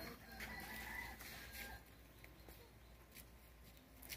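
Faint distant bird calls over quiet outdoor ambience, with a thin high call about half a second to a second in.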